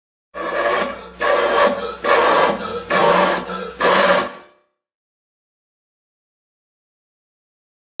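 A run of hard, sustained breaths blown through a cardboard paper towel tube over about four seconds, each lasting most of a second, driving air at a candle flame until it goes out.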